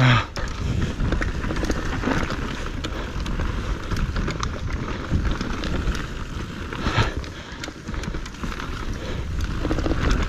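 Downhill mountain bike riding fast over a dirt forest trail: tyres rolling and skidding on dirt and roots, with the chain and frame clattering in many small knocks and a low rumble of wind on the helmet camera. There is a harder knock about seven seconds in.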